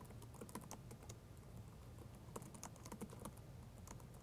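Faint typing on a computer keyboard: a run of quick, irregular keystrokes as a line of code is entered.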